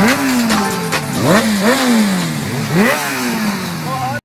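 Motorcycle engines being revved in repeated throttle blips, the pitch jumping up sharply and sliding back down several times.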